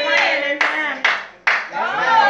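Hand claps in a steady rhythm, about two a second, with a voice calling out or singing over them.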